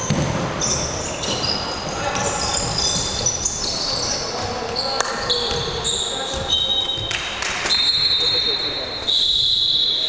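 Indoor basketball play in a reverberant sports hall: sneakers squeak sharply on the court, a ball bounces, and players and spectators talk. Near the end a loud, long, shrill signal tone sounds as play stops for a timeout.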